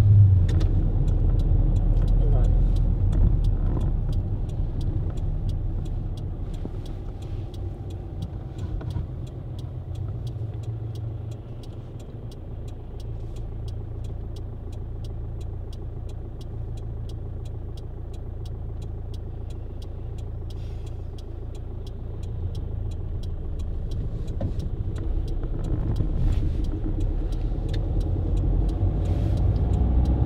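Car engine and road noise heard from inside the cabin while driving, easing to its quietest about twelve seconds in and building again toward the end.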